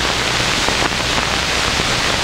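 Steady rushing hiss, like running water or heavy tape noise, with a low hum beneath it and a few faint clicks.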